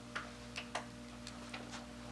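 Quiet room tone: a steady low hum with a few faint soft clicks, about four in the first second.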